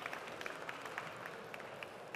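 Faint audience applause thinning out to scattered claps.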